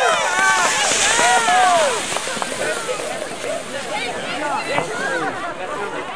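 Crowd of spectators cheering and calling out, many voices overlapping; the loud cheering dies down after about two seconds into a chatter of shorter shouts and calls.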